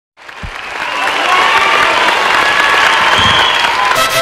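Studio audience applauding and cheering, building up over the first second and then holding steady.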